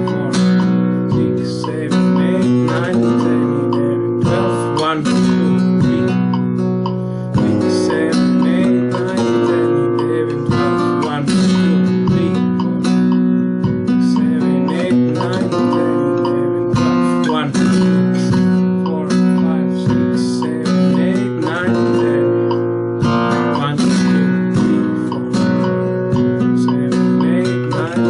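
Flamenco guitar played in the soleá por bulería rhythm: repeated strummed chords with sharp rasgueado strokes marking the accents of the compás.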